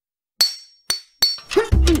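Cartoon sound effect of a metal stepladder's feet clinking down onto the ground: three sharp metallic clinks about half a second apart, each with a short ring. Music starts near the end.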